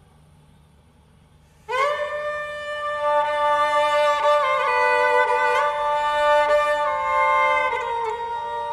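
A short near-silent pause, then a Constantinopolitan lyra (politiki lyra) enters about two seconds in. Its first bowed note slides up into pitch and is held, followed by long sustained notes with small ornamental turns. A lower steady drone note joins about three seconds in.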